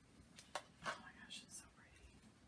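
Faint handling of a small cardboard jewelry package being opened: a few soft rustles and one sharp click about halfway through.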